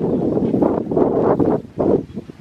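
Wind buffeting the microphone in loud gusts, with a brief lull near the end.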